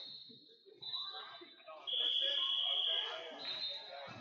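Electronic timer buzzers on the tournament mats sounding in steady, high-pitched tones. The loudest is a single buzz of about a second near the middle, with shorter, higher tones before and after it, over hall chatter.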